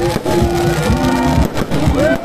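Aerial fireworks bursting: a cluster of sharp bangs and crackles near the start and another pair about a second and a half in, over a steady background of crowd and music.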